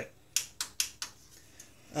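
Front-panel power and reset buttons of a Thermaltake Core V51 PC case being pressed: four short, sharp clicks in the first second or so, the first the loudest.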